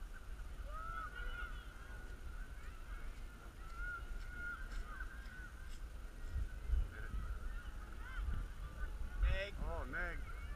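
Distant bird calls, short rising-and-falling calls scattered throughout, with several in quick succession near the end. Underneath is a low rumble of wind on the microphone.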